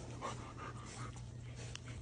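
Faint panting from a golden retriever puppy over a low steady hum.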